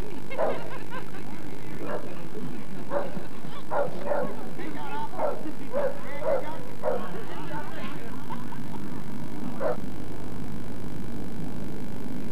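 Boxer dog barking repeatedly, about a dozen short barks at uneven intervals that stop about ten seconds in.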